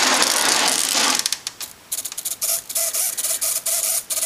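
Home-built R2-D2 dome turning on its ring: about a second of rubbing noise, then a fast run of mechanical clicks like a ratchet. A thin steady tone joins about halfway through.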